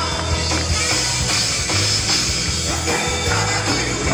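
Live pop-rock band playing loudly through the PA: electric guitars, bass, drums and keyboards, with a steady bass line and little or no singing.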